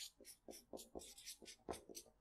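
Faint scratching of a felt-tip marker on flip-chart paper as a word is written by hand, in a quick string of short separate strokes.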